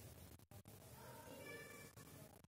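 Faint whiteboard marker squeaking as it is drawn across the board, a thin steady squeal in the second half.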